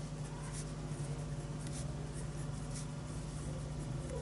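Marker pen writing on paper: a run of short, faint scratching strokes as words are written out, over a low steady hum.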